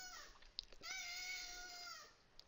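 An animal's single drawn-out, high-pitched cry, steady and faintly falling, about a second long, starting near the middle.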